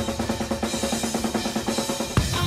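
Drum kit to the fore in a live jazz-fusion band, playing a fast, even run of strokes at about ten a second, with the band's held notes faint beneath.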